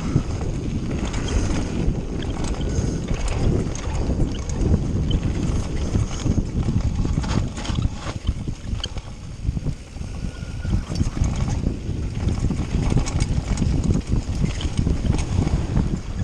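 Mountain bike descending a rough dirt-and-rock trail at speed: tyres rumbling over the ground with constant rattling and clattering from the bike, and wind buffeting the microphone.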